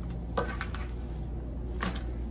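Carnation stems being handled and sorted on a table, with soft rustles and a couple of short handling sounds, over a steady low hum in the room.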